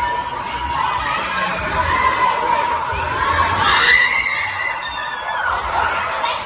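A crowd of kids and teens shouting and cheering over one another, with one louder, higher shout about four seconds in.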